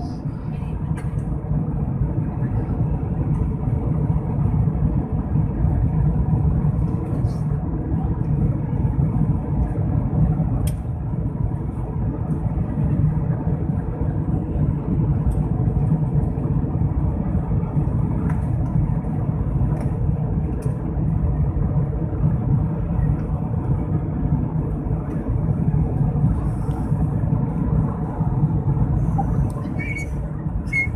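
Steady, loud cabin drone of an Airbus A320-family airliner's jet engines and rushing airflow, heard from inside the cabin during the climb after takeoff. The noise is heaviest in the low rumble and stays even throughout.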